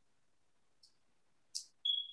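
A single short, high-pitched electronic beep near the end, one steady tone about half a second long, just after a brief soft hiss.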